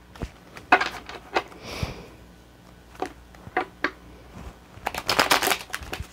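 A deck of tarot cards being shuffled by hand: short scattered bursts of card snaps and flicks, with the longest, densest run about a second before the end.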